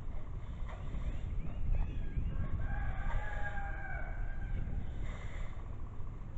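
A bird calling: a few short chirps, then one drawn-out call about three seconds in that lasts about a second and a half, over a low wind rumble on the microphone.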